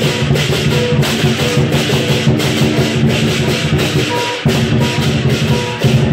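Chinese lion dance percussion band playing loud and continuous: a large drum beating under rapid clashing cymbals, several crashes a second. The low drum sound drops out briefly about four and a half seconds in.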